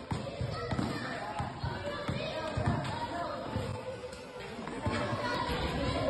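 A basketball bouncing on a concrete court, a run of short, irregular thuds as it is dribbled, with people's voices in the background.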